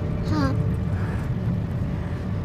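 Steady low rumble of a jet airliner in flight, heard as cabin ambience. A brief voice fragment comes about half a second in.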